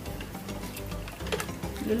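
Bright background music plays, with light clicks and swishes of a silicone whisk stirring thin liquid in a stainless steel pot. A voice starts right at the end.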